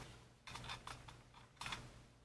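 Faint light clicks and scrapes of a Luger P08 magazine handled against the pistol's grip as it is brought to the magazine well, in two short clusters: about half a second in and again near the end.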